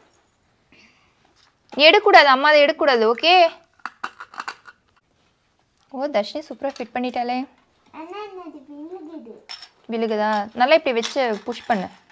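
High-pitched voices vocalising in four short stretches, with scattered light clicks of plastic toy train track sections being fitted together.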